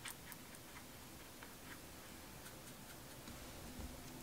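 Faint, scattered light clicks and taps of a brush working paint in a handheld plastic watercolour palette, with a soft low knock near the end.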